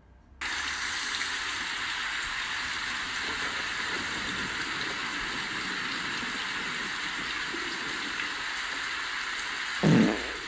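Steady rain, an even hiss that starts abruptly just under half a second in, with a short, louder sound near the end.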